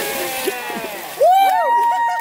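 Water splashing from a jump into a pool, fading in the first half second, under several people shouting and whooping. A louder shout comes in a little over a second in.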